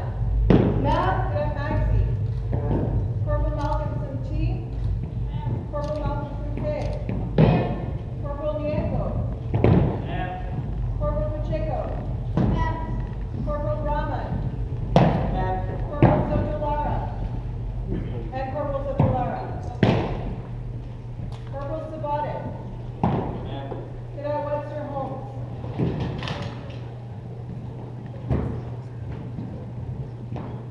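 Boots stamping on a gymnasium floor every second or two, irregularly: drill halts and foot movements of cadets marching into a rank. Each stamp rings briefly in the hall, over steady talking voices.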